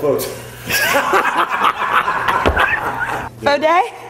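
Laughter, with a woman laughing and others chuckling and talking over it; a short burst of voice near the end.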